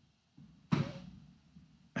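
A single short, sharp breath from a man, heard about two-thirds of a second in as a quick hiss that fades within half a second, between near-silent gaps.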